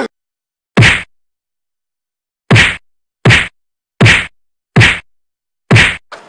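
Six dubbed punch sound effects, each a sharp whack with a low thud under it, coming at uneven gaps of about half a second to a second and a half, with dead silence between them.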